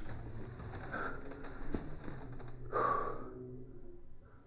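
Bedding rustling as a person shifts and sits forward in bed, with a loud breath out about three seconds in.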